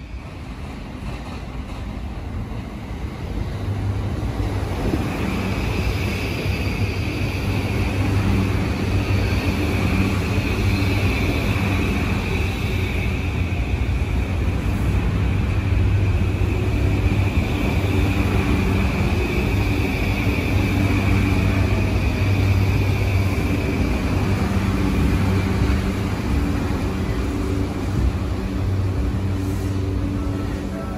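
JR East E235 series 1000 electric multiple unit pulling into the station and slowing alongside the platform. It grows louder over the first few seconds and then holds steady, with a low hum and a high whine.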